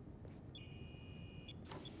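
A faint electronic beep tone, held for about a second, over a low steady interior hum.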